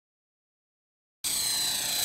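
Silence for about the first second, then an electric radio-controlled Belt CP helicopter cuts in abruptly: a steady high whine of its motor and spinning rotors.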